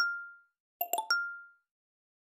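Video-editing transition sound effect played twice: a quick run of bright electronic blips ending in a ringing ding that fades out within about half a second, with dead silence between the two.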